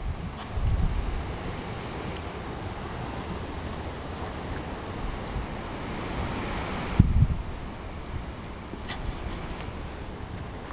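Wind buffeting the camera's microphone: a steady rushing hiss with low rumbling gusts about a second in, and a loud low thump about seven seconds in.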